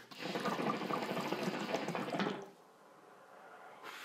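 Water bubbling in a Venture hookah's glass base as smoke is drawn through the hose, a steady, crackly bubbling. The submerged downstem has no diffuser, which gives heavier bubbling. The bubbling stops about two and a half seconds in, leaving a faint hiss.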